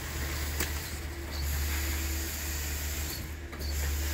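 Low, steady rumble of a concrete pump running while concrete is fed through its hose into foundation wall forms, with one sharp knock about half a second in.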